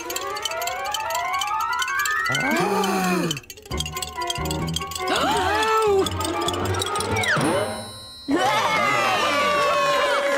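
Cartoon score and sound effects: a rising swoop over the first two seconds, a gasp about three and a half seconds in, then bouncy music that dips briefly before coming back loud near the end.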